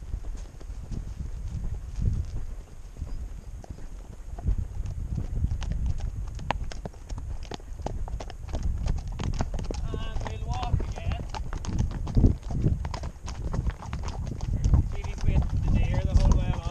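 Horses' hooves clip-clopping at a walk on a rough, stony track, heard up close from the saddle. The steps come irregularly as two horses' footfalls overlap.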